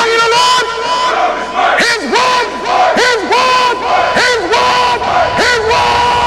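A group of voices chanting in repeated calls, each one rising and then falling away, over a steady held tone.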